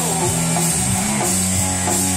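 Live rock band playing, electric guitar over a drum kit, with no vocals.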